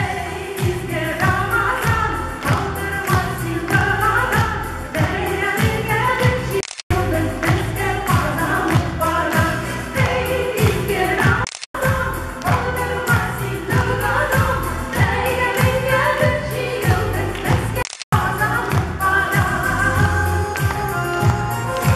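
Female vocal group singing a Tatar song in unison over a musical accompaniment with a steady beat. The sound cuts out completely for an instant three times, at about 7, 12 and 18 seconds in.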